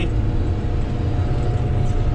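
Komatsu GD655 motor grader's diesel engine running steadily under the operator's cab, a dense low rumble with faint steady tones above it, heard from inside the cab.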